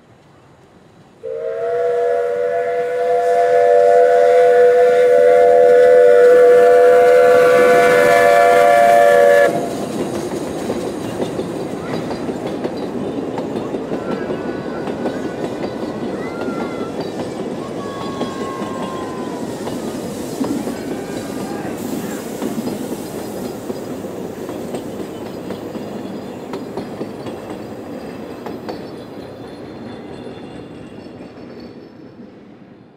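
Steam locomotive chord whistle, several close tones sounded together, blown once for about eight seconds as the loudest sound, from Puffing Billy's South African NGG16 Garratt No. 129. When the whistle stops, the train's running and wheel noise carries on as a steady rush that slowly fades as it rolls past.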